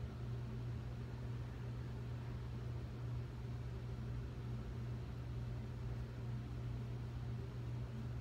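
A steady low hum with a faint even hiss: constant background room noise.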